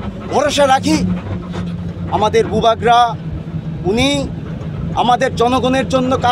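A man speaking loudly in bursts, with a steady low engine hum underneath.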